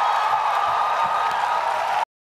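Large audience applauding steadily, cut off suddenly at the end.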